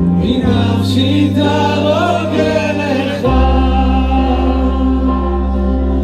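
A male singer singing a song through a microphone and PA, with a group of men around him singing along, over amplified backing music whose low bass notes are held and change twice.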